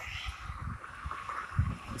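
Wind rumbling on the microphone in irregular low gusts, one stronger about one and a half seconds in, over a steady outdoor background hiss.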